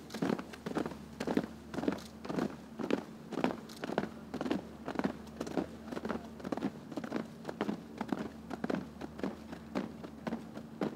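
Boot footsteps of a file of soldiers marching over a dirt parade ground: a steady run of short scuffing steps, two or three a second, over a faint steady hum.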